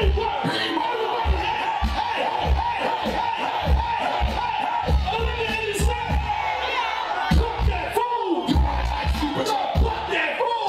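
Live hip hop played loud through a concert sound system: a heavy bass beat with rappers shouting and rapping lines into their microphones over it.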